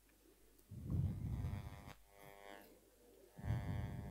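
A faint voice speaking away from the microphone in two short stretches, about a second in and again near the end.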